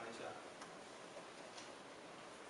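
Quiet pause in a hall: a steady faint hiss of room tone, with no clear event.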